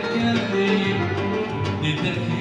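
Live Kurdish folk band playing: electronic keyboard, violin and a plucked long-necked lute, with a male singer at the microphone.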